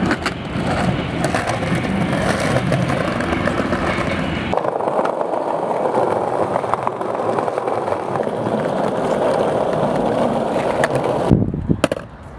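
Skateboard wheels rolling over stone plaza paving, a steady gritty rumble with frequent small clicks. The rumble changes in tone about a third of the way in, and a sharp knock comes shortly before the end, after which the rolling stops.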